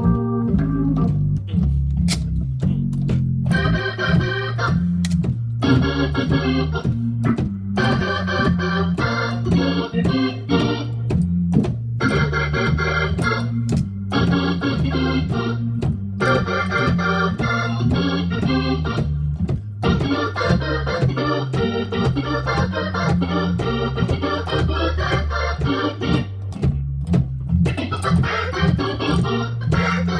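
Hammond organ played in jazz style: a steady bass line in the low register under right-hand phrases and chords that break off and start again every second or two.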